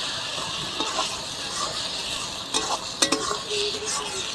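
Mushrooms frying in oil and masala in a metal kadai, a steady sizzle, while a metal spatula stirs and scrapes them against the pan, with a few sharper scrapes between about two and a half and three seconds in.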